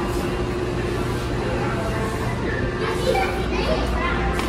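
Children's voices chattering indistinctly in a large store, over a steady low hum; the voices come in more strongly over the last second or so.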